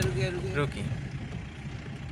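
Motor vehicle driving over a rough sandy track, heard from inside the cabin: a steady low rumble of engine and tyres. A man's voice trails off in the first half-second.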